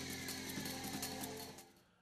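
Theme music for a TV sports segment, with falling sweeps over a quick, regular beat, fading out about three quarters of the way through.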